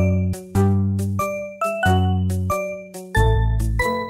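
Instrumental children's music: a run of struck, ringing notes over a bass line, each note fading before the next, a few notes a second.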